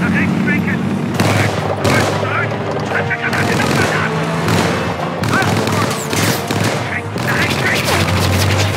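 Battle sound mix of World War II tank engines running and tracks moving, under repeated bursts of machine-gun fire and sharp impacts, with a shout partway through.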